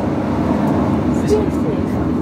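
Onboard running noise of a Class 156 Super Sprinter diesel multiple unit in motion: the underfloor diesel engine and the wheels on the rails, a steady drone and rumble with a constant low hum.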